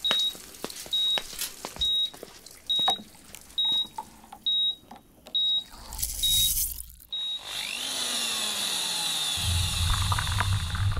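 Hospital patient monitor beeping at a steady pace, a little under once a second, stopping about seven seconds in. A hissing wash with slow gliding tones takes over, and a low hum comes in near the end.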